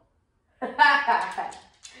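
A woman laughing: a loud burst of laughter starting about half a second in and fading out over about a second.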